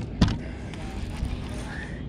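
Two sharp knocks about a quarter second apart at the start, as a landing net is grabbed and swung out against the side of an aluminium fishing boat, then a steady low rumble of wind and water.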